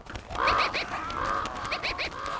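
Several ravens calling at once: many short, overlapping calls that begin about a third of a second in and carry on without a break.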